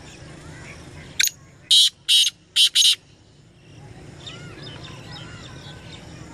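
Black francolin calling: a quick series of five harsh, grating notes about a second in, the first short and the last two close together. Faint chirps of small birds are heard before and after.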